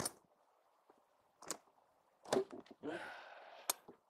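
Motorhome exterior basement compartment doors being worked by hand: a sharp click as one door shuts, a few latch clicks, then a short rustle as the next bay door is unlatched and lifted open, ending in another sharp click near the end.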